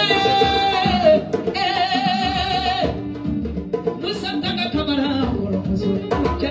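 A woman singing live into a microphone, holding long notes, one of them with a marked vibrato, accompanied by hand drums.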